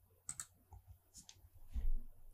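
A few faint mouse clicks as the Apply button is pressed, with a soft low thump near the end.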